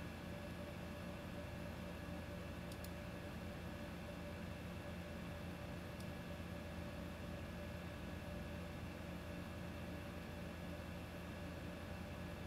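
Quiet room tone: a steady low electrical hum and hiss, with a few faint clicks of a computer mouse.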